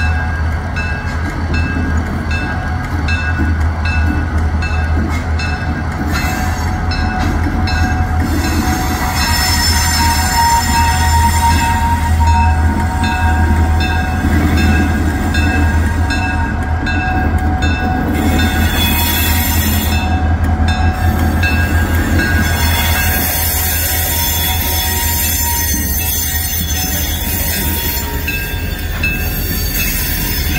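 Diesel freight locomotive moving slowly past with a steady low engine rumble, followed by freight cars rolling by, their wheels squealing with several thin high tones on the curved track.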